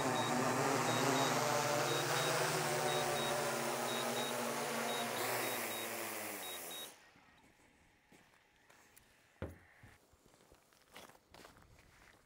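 A quadcopter drone's propellers whirring as it comes in to land close by, while a high beep repeats about once a second. The pitch drops as the motors spin down, and they stop about seven seconds in. Only faint footsteps and small knocks follow.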